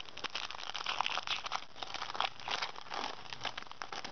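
Foil Pokémon TCG booster pack wrapper crinkling and crackling as it is handled and opened, a fast irregular run of small crackles.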